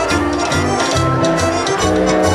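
Live band music with an upright bass, held melody notes and a steady, quick drum beat.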